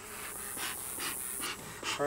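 Bee smoker's bellows being squeezed, puffing air in about four short puffs, roughly two a second.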